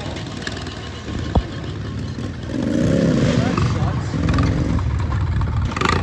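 ATV engine revving, its pitch rising and falling, loudest from about two and a half seconds in until near the end.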